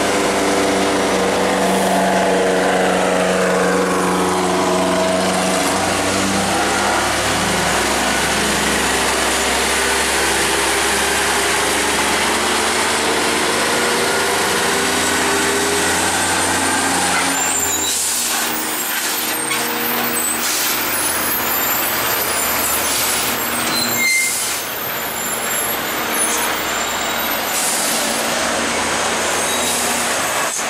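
Diesel engine of a FAW JH6 tractor-trailer labouring up a steep grade, its note rising over the first few seconds and then holding steady. In the second half there are several short air hisses from the truck.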